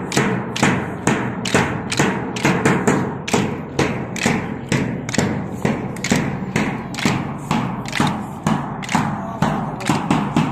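A bass drum beaten in a steady drill rhythm, about three strikes a second with some in quick pairs, and wooden PT dumbbells clacking together in time with it.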